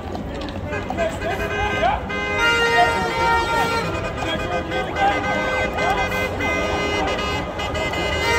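Vehicle horns honking in long, overlapping blasts from about two seconds in, over the unintelligible shouting and chatter of a street crowd.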